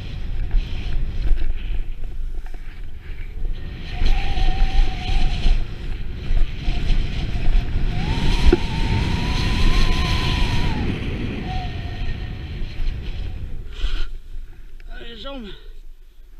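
Snowboard sliding and carving over snow at speed, its edge scraping unevenly, with wind buffeting the body-mounted camera microphone and a low rushing rumble. Near the end the rushing fades as the board slows and a short falling-pitched call from the rider is heard.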